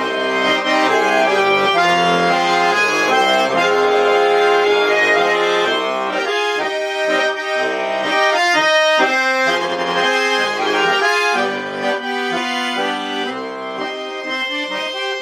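Russian garmon (button accordion) tuned in D-sharp playing an instrumental passage of the song's tune, melody over chords. About halfway through, the playing turns to shorter, more detached notes.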